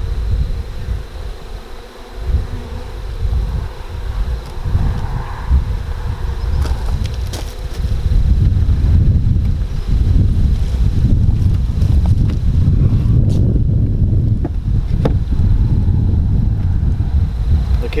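Honeybees buzzing as they fly around a hive. A low rumble of wind on the microphone grows louder about eight seconds in.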